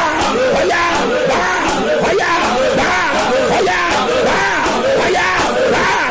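A man shouting fervent prayer, his voice rising and falling in short, rapid chanted phrases with no break, over music.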